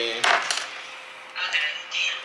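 Small makeup items clicking together in a zippered makeup bag as it is rummaged through: a couple of sharp clicks about a quarter second in, then a brief rustle near the end.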